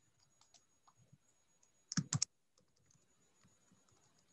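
Computer keyboard typing: scattered soft key clicks, with three sharper clicks in quick succession about two seconds in.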